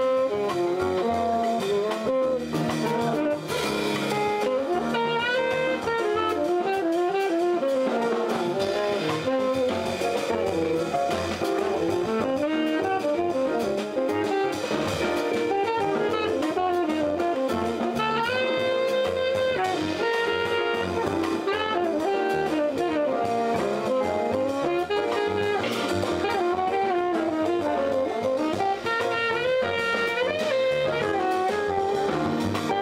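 Live small-group jazz: a tenor saxophone plays a winding solo line over double bass, guitar and drum kit.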